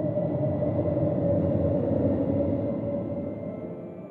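Logo-intro sound effect: a low, rumbling whoosh with a faint steady tone in it. It swells to a peak about two seconds in and dies away near the end.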